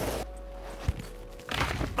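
Skis scraping and skidding on hard-packed snow, the noise swelling near the end as the skier comes close, with one short knock about a second in.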